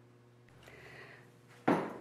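Near-quiet room tone with a faint soft hiss in the middle, then a woman's voice starts speaking just before the end.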